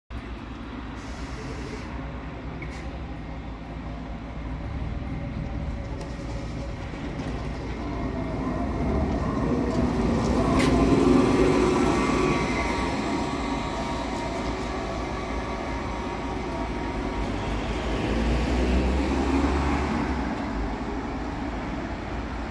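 Irisbus trolleybus driving past close by: its electric drive and tyres grow louder, loudest about halfway through with a faint whine, then fade away.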